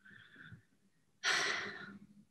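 A woman's loud, breathy exhale through the mouth, like a sigh, starting about a second in and trailing off; a faint breathy sound comes just before it at the start.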